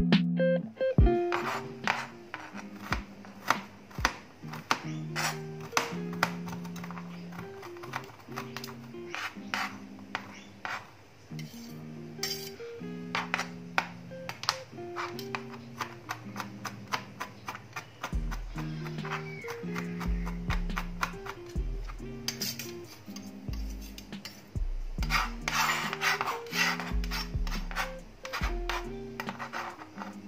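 Background music with plucked notes, a bass line coming in about halfway through. Under it, a kitchen knife taps on a plastic cutting board as garlic is sliced and then minced, the chops coming thick and fast near the end.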